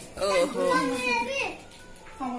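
A child's voice talking for about a second and a half, high-pitched with rising and falling pitch, then a quieter pause near the end.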